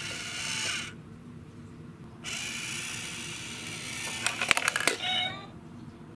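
Battery-powered cat coin bank at work: its small motor whirs in two spells as the lid lifts and the cat's paw pulls the coin off the plate. A quick run of sharp clicks follows as the coin drops in and the lid snaps shut, then a short, falling meow near the end.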